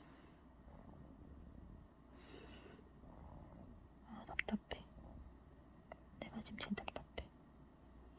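Soft whispered muttering under the breath, and in the second half a scattering of small sharp clicks, close handling of the plastic punch needle and yarn as it is threaded.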